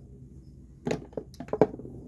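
Plastic skincare bottles and tubes being handled and set down: a few short clicks and knocks about a second in, the loudest near the end.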